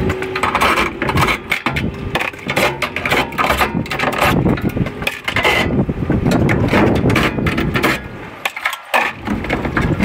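A cordless drill backing screws out of a boiler's sheet-metal casing, with loud, irregular metal clattering and knocking as the steel panels and copper piping are handled.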